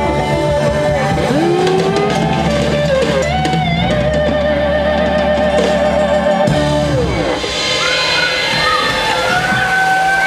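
Live rock band playing, with electric guitar, bass and drum kit. There are sliding guitar notes, and a deep held bass note stops about seven seconds in.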